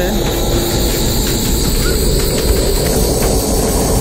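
Steady wind buffeting the microphone: a low rumble under a constant hiss.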